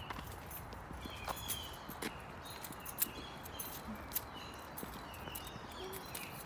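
Songbirds singing: short, high chirps repeating throughout. Footsteps fall roughly once a second underneath.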